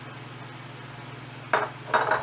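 Two short knocks of a small ceramic bowl being set down on the counter, one about a second and a half in and one at the end, over a steady low hum.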